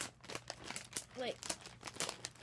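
Plastic snack packaging crinkling as it is handled: a rapid, irregular run of small crackles.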